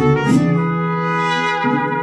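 Mariachi trumpets playing long held notes in harmony, with the band behind them; the notes change about a second and a half in.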